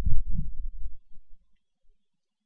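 A sharp click, then about a second of low, muffled thumping that fades away.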